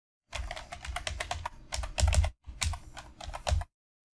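Computer keyboard typing: a fast run of keystrokes with a brief pause a little past halfway, stopping shortly before the end.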